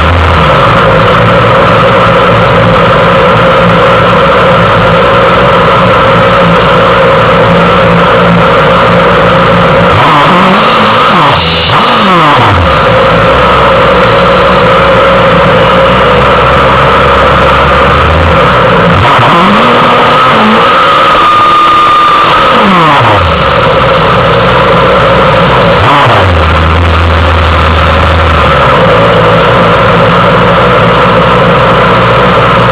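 Motorcycle engine of a drag car idling, heard from on board, revved up and back down twice: briefly about ten seconds in, and longer from about nineteen to twenty-three seconds in.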